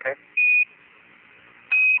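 Two short, steady, high beeps over the Apollo air-to-ground radio link, one about half a second in and one near the end. These are Quindar tones, which key a transmission off and on. Faint radio hiss lies between them.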